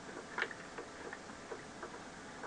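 Faint, irregular clinks of ice cubes against a glass of iced coffee as it is sipped, the clearest a little under half a second in.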